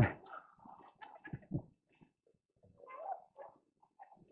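Faint, scattered laughter and chuckles in short broken bursts, fading after a joke, with a second small burst about three seconds in.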